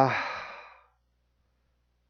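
A man's drawn-out 'uh' trailing off into a breathy sigh that fades out in under a second, followed by silence.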